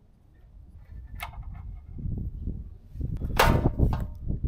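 A Harley-Davidson Low Rider ST's plastic fuel-tank console panel being pried up and popping free of its mounts. There is a single click about a second in, then a loud crackling scrape near the end as the panel comes loose.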